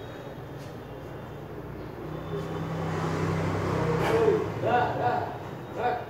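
Street traffic noise: a vehicle engine's steady low hum grows louder for a couple of seconds, then drops away, followed by brief bursts of people's voices near the end.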